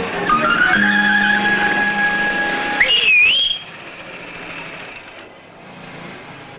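Film background music ends on a held high note. About three seconds in, a traffic policeman's pea whistle gives one short warbling blast, and after it only a quieter street background remains.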